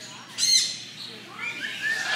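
Pet cockatoo giving a short, loud squawk about half a second in, then softer rising calls near the end while having its head scratched.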